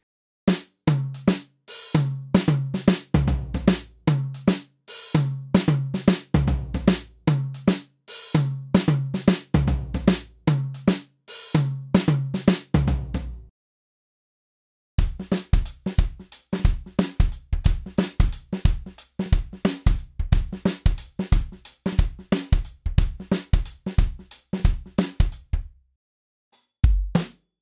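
Acoustic drum kit loops played back as samples: a groove of kick, snare and hi-hat for about thirteen seconds, a gap of about a second and a half, then a second, busier loop.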